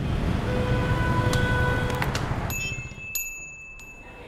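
Edited transition sound effect: a loud rumbling rush with faint ringing tones and a few clicks, which drops away suddenly after about two and a half seconds, leaving a thin, high ringing tone.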